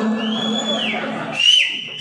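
A high whistling tone that rises, holds for about half a second and falls away, then a second shorter one near the end, over a steady low drone that cuts out about a second and a half in.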